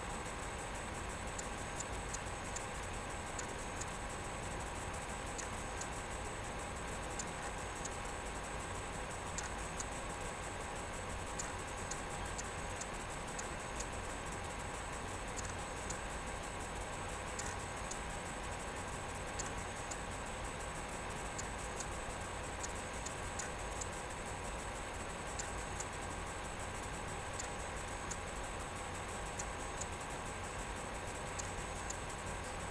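A steady hum made of several constant tones, with faint, short clicks coming irregularly, about one or two a second.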